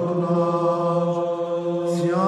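Male monastic choir singing Byzantine Orthodox chant in Old Slavonic, in the second tone, holding one steady sustained note. Near the end there is a short breathy consonant and the melody moves on.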